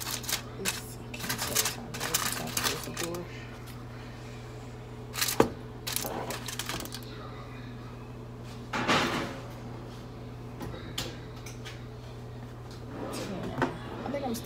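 Aluminium foil crinkling as it is pressed over a baking pan, then a sharp knock about five seconds in and a short clatter about nine seconds in as the pan is put back into the oven, over a steady low hum.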